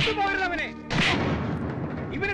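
About a second in, a sudden loud bang with a rumbling tail that fades over the next second.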